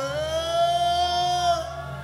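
Live worship singing: a voice holds one long high note for about a second and a half over a low sustained accompaniment.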